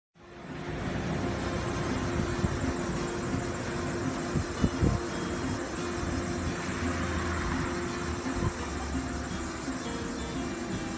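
Street ambience with traffic: a steady hum and the noise of vehicles, with a few light knocks. It fades in at the start.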